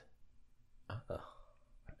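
A lull in a conversation: a man's brief, low murmured "uh-huh" about a second in, then a faint click near the end.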